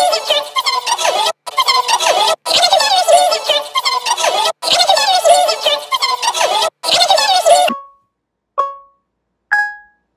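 Music with a melody, cutting out briefly several times, stops a little over three-quarters of the way in. A phone video app's three-second countdown timer then gives three short beeps about a second apart, the last one higher.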